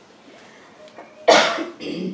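A person coughing: one loud, sharp cough a little past halfway, then a softer second cough just before the end.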